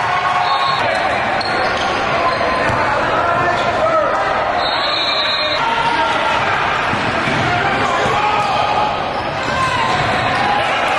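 Basketball game audio in a large gym: a ball bouncing on the hardwood court amid the chatter of players and spectators echoing around the hall.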